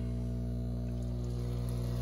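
Air bubbler starting in a bucket anodizing bath over a steady low hum: air begins to bubble up through the electrolyte as the manifold valve is opened, agitating the bath so bubbles don't cling to the aluminum part.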